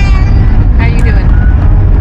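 Steady low road and tyre rumble inside the cabin of a moving Tesla electric car, with no engine note. A brief voice sounds about a second in.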